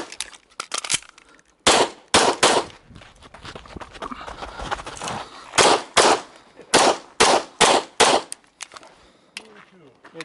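Sig Sauer P320 X-Five pistol fired rapidly during a timed IDPA stage. There are about three or four shots a couple of seconds in, a pause of about three seconds, then about six more shots in quick pairs.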